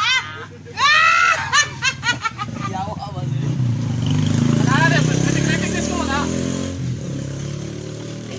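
People laughing loudly at first, then a small motorcycle's engine passes by, growing louder to a peak about five seconds in and fading away.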